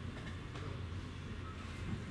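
Room noise: a steady low rumble with a few faint clicks, and no singing.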